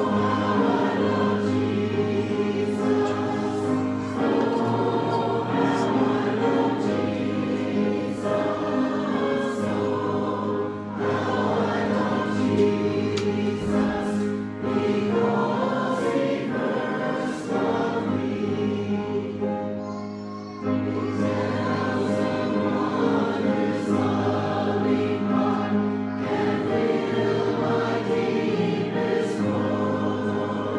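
Church choir of men and women singing together, with sustained notes. There is a short break between phrases about two-thirds of the way through.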